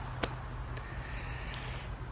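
Steady, low outdoor background noise with a single faint click about a quarter of a second in.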